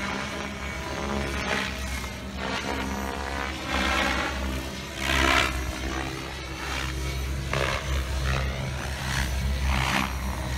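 Radio-controlled 3D helicopter flying aerobatics, its rotor and motor noise sweeping and swelling in loudness several times as it turns and passes, over steady background music.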